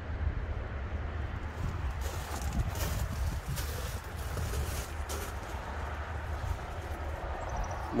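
Wind buffeting the microphone as a steady low rumble, with a few brief rustles from the camera being moved.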